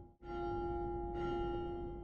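A large church bell tolling: struck a fraction of a second in and again about a second later, each stroke ringing on with a steady tone that slowly fades.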